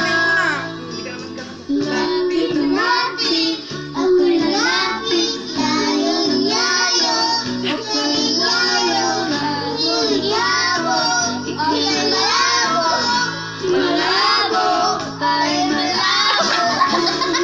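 A young child singing along to music, with a steady backing track underneath.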